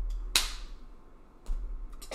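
A sharp click about a third of a second in, then a fainter click about a second later, over a low rumble.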